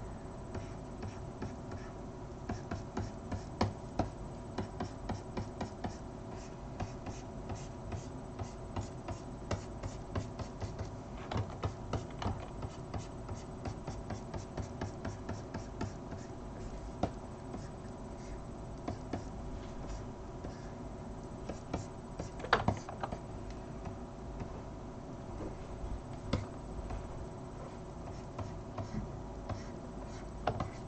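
A stylus tapping and scratching on a graphics tablet: irregular light clicks and scrapes throughout, over a steady low electrical hum.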